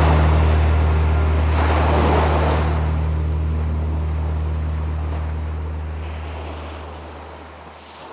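Sea waves washing onto the shore, swelling about two seconds in, over a held low note, the whole fading out over the last few seconds.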